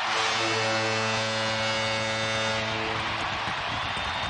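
Arena goal horn sounding one long steady note over a cheering, clapping crowd, marking a home-team goal. The horn cuts out about three and a half seconds in while the crowd noise carries on.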